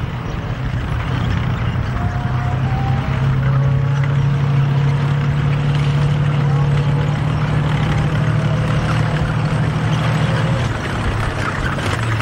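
Tank engine running with a steady low drone as the tank drives close by. The drone grows louder about three seconds in and drops back just before the end.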